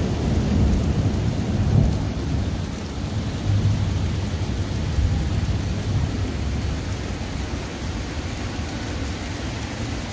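Heavy rain pouring down, a steady hiss, under a low rolling rumble of thunder that is loudest in the first two seconds and swells again a few seconds later.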